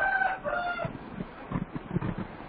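A drawn-out animal call held on a steady pitch, in two parts lasting about a second in all, followed by a few soft low thuds.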